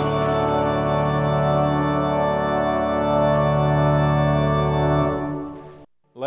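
Organ holding a long sustained chord, the closing chord of a piece, which fades out about five seconds in.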